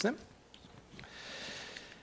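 A man's last spoken word trailing off, then a pause and a faint, short in-breath about a second in, lasting under a second.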